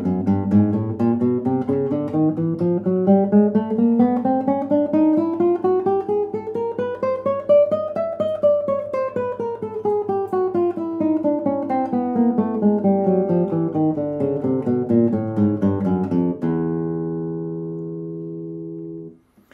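Nylon-string classical guitar playing a three-octave chromatic scale from low E, note by note, about four notes a second. It climbs evenly by semitones to high E about eight seconds in, then descends back down, ending on a low note left to ring.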